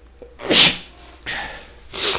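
A person sneezing once, loudly, about half a second in, followed by two shorter, noisy breaths.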